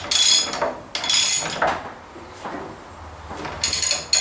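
Socket ratchet wrench on a long extension clicking through its back-strokes while a bolt is tightened, in three short bursts: at the start, about a second in, and near the end.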